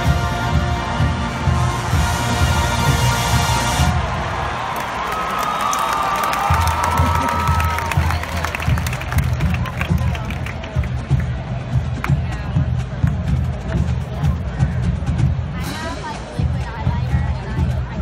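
A large marching band's brass and drums hold the last chord of a piece, which cuts off about four seconds in. A stadium crowd then cheers, with some whistling near the start of the cheer.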